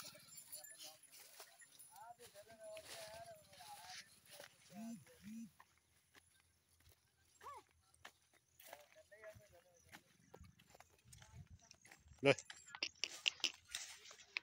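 Barbari goats browsing in scrub: scattered rustling and snapping of leaves and dry stems, with a few short faint calls in the background. A man calls out "le" near the end.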